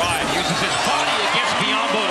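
Live basketball play on a hardwood court: the ball bouncing and sneakers squeaking over steady arena crowd noise.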